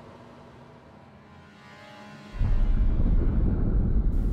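Faint, quiet background music, then about two thirds of the way in a loud, deep rumble sound effect starts suddenly and keeps going.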